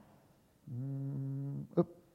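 A man's short closed-mouth hum ("mmm") held on one steady low pitch for about a second, then a brief click near the end.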